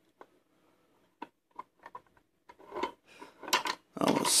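Irregular light metal clicks and faint scraping from a Taylor Group 2 safe combination lock as its brass wheel pack is turned by hand to line up the gates, with a few louder clicks in the second half.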